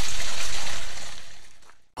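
Creek water running steadily, a constant rushing hiss that fades out over the second half and is gone just before the end.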